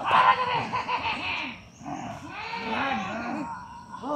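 Wordless human voices crying out in two bursts of about a second and a half each, with a short lull between them.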